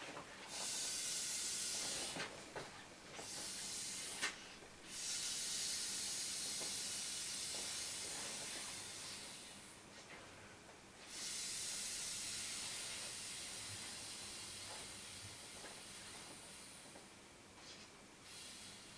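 A man blowing up an inflatable pony toy by mouth: long hisses of breath pushed through its valve, about five blows, the longest near five seconds each, with short pauses for inhaling between them.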